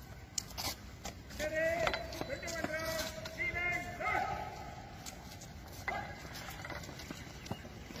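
Men's voices calling out, with a few sharp knocks scattered through. No cannon shot.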